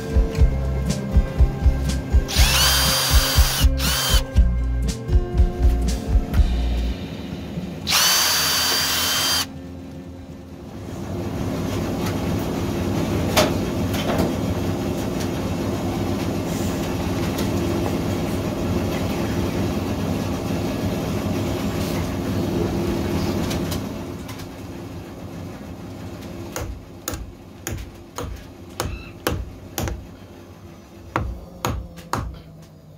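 A cordless drill runs in two short bursts of a few seconds each, boring or driving into wood. Near the end, a hammer taps a metal hook plate on a wooden block about eight times.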